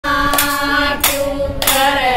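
Women singing a Haryanvi devotional bhajan in held notes, with hand claps keeping time, three claps at an even beat of a little over half a second.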